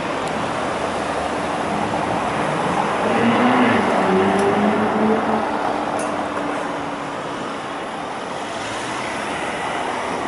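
Street traffic, with a car engine accelerating past, its pitch rising and loudest between about three and five seconds in.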